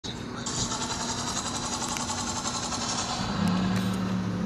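Street traffic noise: a steady rush of passing vehicles on a multi-lane road, with a low steady hum joining about three seconds in.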